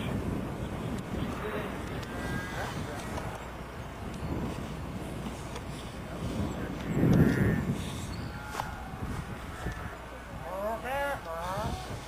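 Indistinct voices talking off-microphone over a steady low hum, with a brief louder low-pitched burst about seven seconds in.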